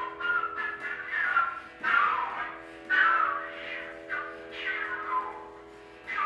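Flute improvisation in Indian classical form played with extended techniques: short breathy phrases that swoop downward, about one a second, over a steady drone.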